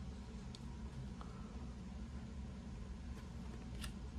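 A few faint ticks of baseball cards being slid one by one to the back of a hand-held stack, over a steady low hum.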